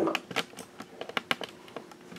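A series of irregular light clicks and taps, several a second, over a faint steady hum.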